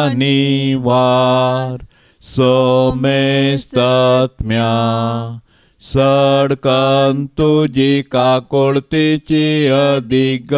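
An unaccompanied man's voice chanting a devotional verse on an almost level pitch, in held phrases with short breaks, the syllables coming quicker near the end.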